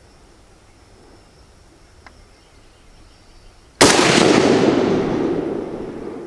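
A single rifle shot from an old WASR-10 AK-pattern rifle in 7.62×39mm, about four seconds in, with a long echo that fades away over the next two seconds.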